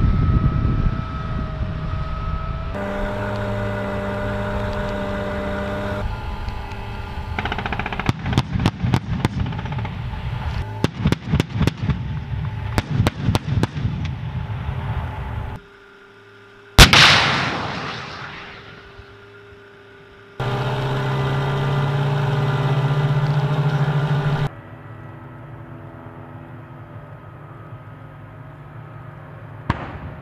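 Bradley fighting vehicles' diesel engines running with a steady whine. In the middle come several rapid bursts of automatic weapons fire. About 17 seconds in, a single very loud blast dies away over a few seconds, and then engine noise returns.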